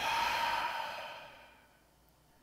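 A man sighing: one long breath out through the mouth that starts suddenly and fades away over about a second and a half.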